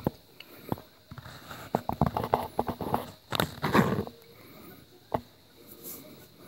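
Scattered light clicks and taps, coming irregularly. There is a louder cluster a little past the middle and a single sharp click near the end.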